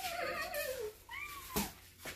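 Kitten meowing: one long meow falling in pitch, then a shorter, higher meow about a second in, with a brief knock soon after.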